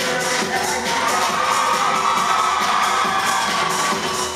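Loud dance music with a steady beat, and a crowd cheering over it that swells about half a second in and dies down near the end.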